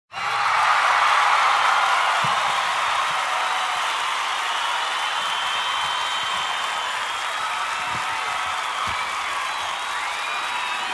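Crowd applauding and cheering, a steady wash of noise that starts abruptly and is loudest in the first couple of seconds.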